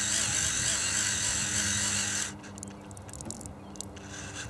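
Small electric fuel pump running as it pumps gasoline into a model aircraft's nearly full tanks, with a steady hum and hiss, then switched off a little over two seconds in, leaving only a faint hum.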